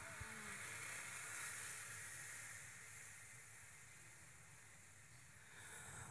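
Near silence in a pause of amplified Quran recitation: the last echo of the voice dies away at the start, leaving a faint hiss that fades out about halfway through.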